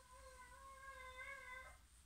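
A cat's long, drawn-out meow held at one steady pitch, faint, stopping shortly before the end.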